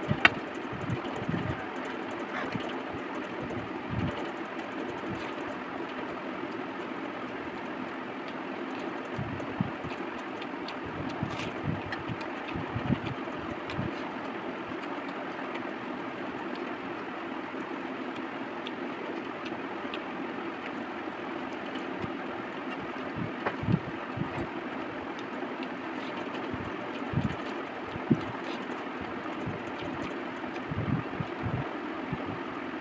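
Eating by hand from a steel plate of rice and egg curry: scattered short chewing and wet mixing sounds over a steady rushing background noise. A sharp clink of steel on steel comes just after the start, as the small gravy bowl meets the plate.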